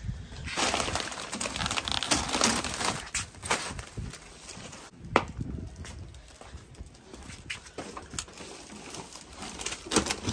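Plastic grocery bags rustling as they are handled on a concrete porch, with scattered sharp knocks as items are set down, the strongest about halfway through.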